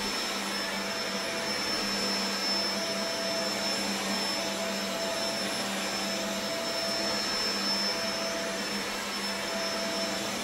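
Corded upright vacuum cleaner running steadily as it is pushed back and forth over thick carpet, a steady high whine over a low hum.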